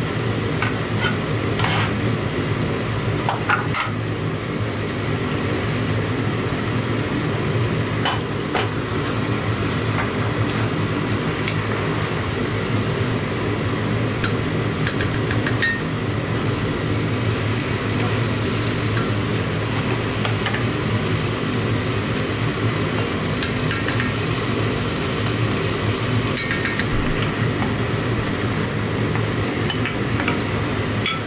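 Vegetables sizzling as they fry in a large pot, with a wooden spoon stirring and scattered clinks and knocks against the pot and a bowl. A steady low hum runs underneath.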